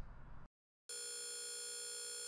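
Quantization noise from a 480 Hz sine wave reduced from 24 bits to 3 bits, played on its own: after a moment of silence, a steady synthetic tone begins about a second in, at the sine's pitch with many high overtones.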